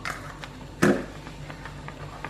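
A few light clicks and one sharper knock a little under a second in, from kitchen utensils being handled at the wok.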